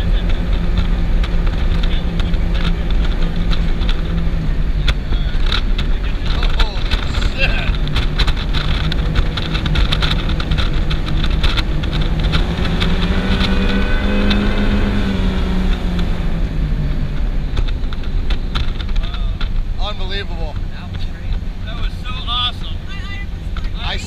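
Twin 825-horsepower engines of a high-performance powerboat running at speed under a heavy rush of wind and water. The engine note rises in pitch about halfway through, then falls away and the sound eases off toward the end. Voices come in near the end.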